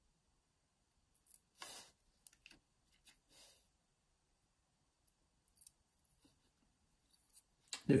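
Faint, scattered small clicks and rustles of brass lock pins being set by hand into the pin holes of a Euro cylinder plug.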